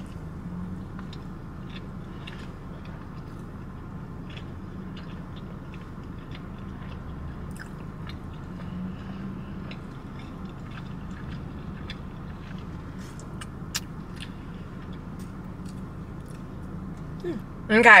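A person biting into and chewing a hash brown bagel breakfast sandwich, with faint mouth clicks and small crunches, over a steady low hum in a car cabin.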